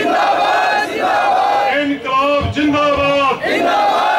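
A crowd of protesters shouting slogans together, short loud phrases repeated about once a second.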